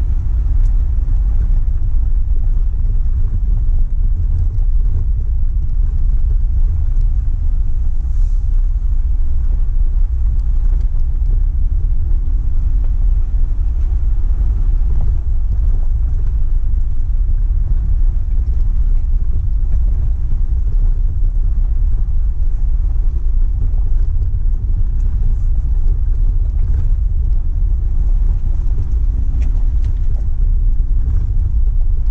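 A 4x4 vehicle driving slowly up a gravel trail: a steady low rumble of the engine and tyres on loose stone, with a faint engine hum above it.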